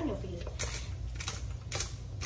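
Jar-top pepper grinder being twisted by hand, grinding the last black peppercorns: a string of short gritty crunches, about five in two seconds, at an uneven pace.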